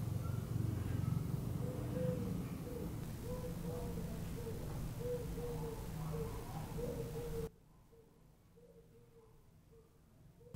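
Ambient background noise recorded through a Rode VideoMic Me phone microphone, raised by normalising: a steady low rumble with a row of faint short higher notes. About seven and a half seconds in it drops suddenly to near silence, the same kind of recording left unprocessed and very quiet.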